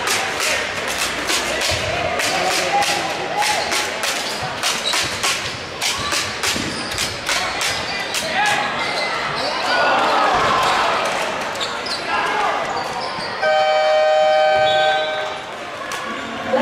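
A basketball bounces repeatedly on a gym floor, with voices echoing around a sports hall. About 13.5 seconds in, the scoreboard horn sounds one steady tone for about a second and a half as the clock runs out.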